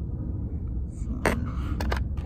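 A steady low rumble with one sharp click about a second in and a quick cluster of two or three clicks near the end.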